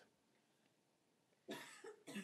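A man coughs once, quietly, about one and a half seconds in, after near silence.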